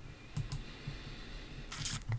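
A few faint clicks from a computer keyboard and mouse: two short clicks about half a second in, and a brief noisy burst near the end.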